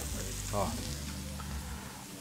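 Meat sizzling on a barbecue grill: a steady, even hiss.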